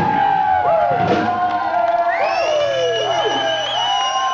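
A live rock band holding out the end of a song: gliding, bending instrument notes and long held tones over a low sustained bass note, with a crowd cheering.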